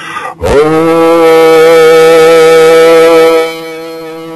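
A man's voice sings one long sustained note on Mi (E) as a toning exercise. It slides up into the note about half a second in and holds it steady. Near the end the level drops and a softer held tone carries on.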